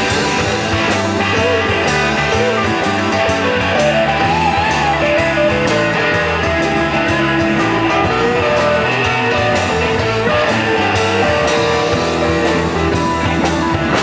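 Blues-rock band playing live with no vocals: electric guitar lead with bent notes over a steady drum beat and bass.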